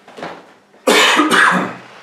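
A person coughing twice, loudly, about a second in; the two coughs come about half a second apart. A fainter sound comes just before them.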